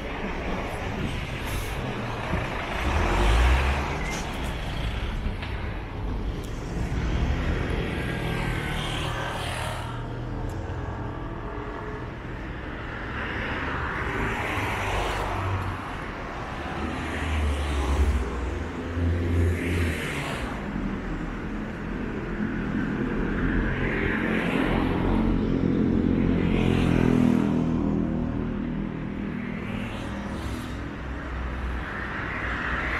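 City street traffic: cars and trucks passing one after another with tyre and engine noise that swells and fades every few seconds. A heavier vehicle's engine hum builds near the end.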